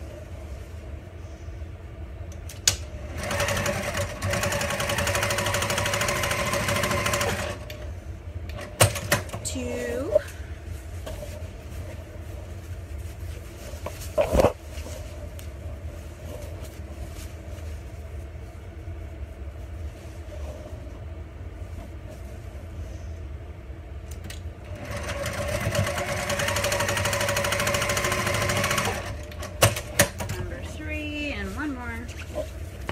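Electric sewing machine stitching a corner seam through heavy outdoor fabric in two runs of about four seconds each, the first starting about three seconds in and the second near the end. Between the runs come quieter fabric handling and a few sharp knocks.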